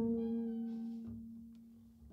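Free-improvised jazz from a trumpet and acoustic bass duo: a single plucked double bass note rings out and fades away steadily, nearly gone by the end.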